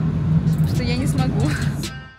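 A car engine idling close by with a low, steady rumble that cuts off sharply at the end. Over it, from about half a second in, a woman laughs.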